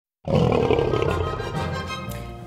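A lion's roar over an intro music sting, starting suddenly just after the start and slowly fading.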